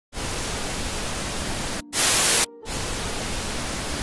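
Static hiss, even across all pitches, that drops out briefly just before two seconds and again about half a second later, with a louder burst of hiss between the two drop-outs.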